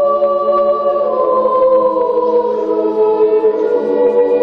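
Boys' choir singing long sustained chords, the harmony stepping down to a new chord about a second in and shifting again near the end.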